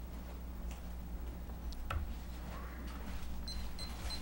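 Quiet room tone with a steady low electrical hum, a faint click about two seconds in, and three short faint high-pitched beeps near the end.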